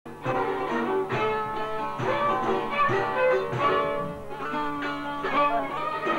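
Albanian folk instrumental: çifteli (two-string long-necked lutes) plucked in quick repeated notes, with accordion accompaniment holding sustained tones. The music cuts in abruptly at the very start.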